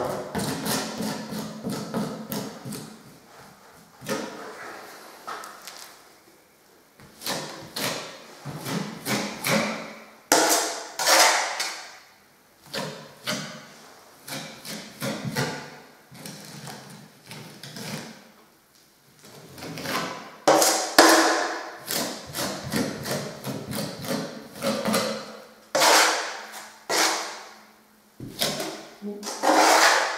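Small steel trowel scraping and pressing undercoat plaster into holes in a plaster ceiling, in irregular strokes with short pauses between them.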